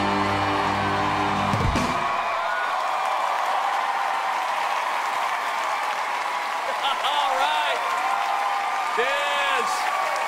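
Upbeat jive dance music ends about two seconds in, and a studio audience applauds and cheers. Voices rise over the applause in the last few seconds.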